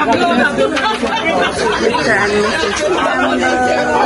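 A group of people talking over one another in lively conversation.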